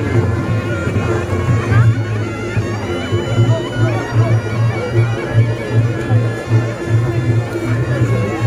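Reog Ponorogo gamelan playing: the slompret, a reedy shawm-like trumpet, holds a wailing melody over a steady low drum beat of about two to three strokes a second, with crowd noise throughout.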